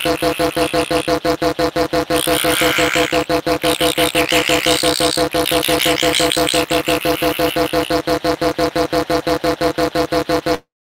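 Loud electronic music: a synth loop holding a few steady notes, chopped into a fast, even stuttering pulse of several beats a second.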